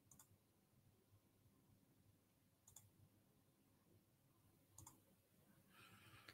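Near silence, broken by a few faint, sharp clicks spaced about two seconds apart: a computer mouse being clicked.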